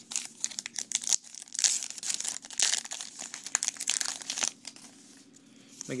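A yellow 2012 Topps Heritage baseball-card pack wrapper crinkling and tearing as it is opened by hand: a dense run of sharp crackles and snaps that dies down over the last second or so.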